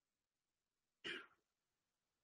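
A person clearing their throat once, briefly, about a second in, against near silence.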